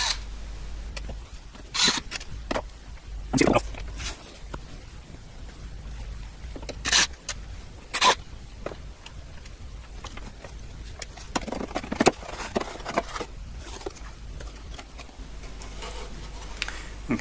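Scattered sharp clicks and knocks as a cordless drill-driver backs out the screws of a computer's metal rear cover, then a cluster of small clicks and scrapes as the cover is lifted off.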